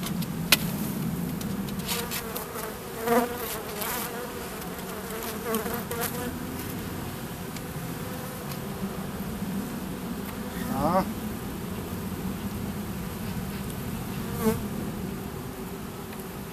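Honeybees buzzing in a steady hum over an open hive, with a few louder buzzes as single bees fly close by. A sharp click about half a second in and a few lighter knocks come from the wooden hive frames being handled.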